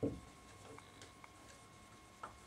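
Faint dry-erase marker writing on a whiteboard: soft strokes with a few light ticks as letters are written.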